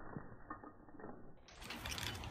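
Slowed-down, pitch-lowered audio of slow-motion playback: a few faint clicks and rattles over a muffled rumble. About one and a half seconds in it switches back to normal-speed outdoor sound, a steady hiss with a low rumble.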